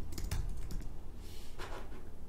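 Typing on a computer keyboard: a quick run of keystrokes in the first half second, then a few scattered ones.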